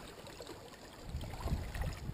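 Small waves lapping against a rocky lakeshore, faint and steady, with a low rumble joining in about a second in.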